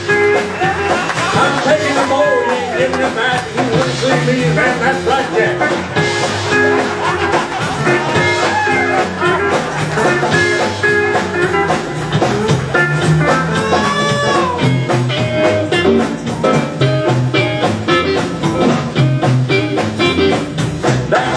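Live country band playing an instrumental lead-in with a steady drum beat: electric guitar, upright bass, drum kit and pedal steel guitar, with a few sliding notes.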